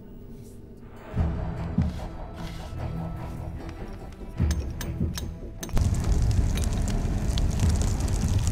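Film score with deep booming hits, the first about a second in and more around four and a half and five and a half seconds. From about six seconds in, a forge fire crackles loudly under the music.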